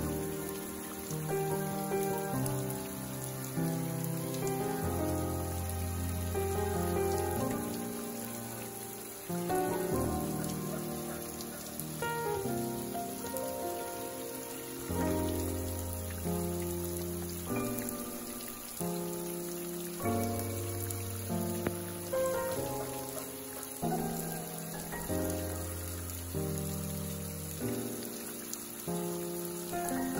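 Water trickling and dripping down a mossy rock face in thin streams, a steady pattering hiss, under slow background music of held chords with a deep bass note that returns every few seconds.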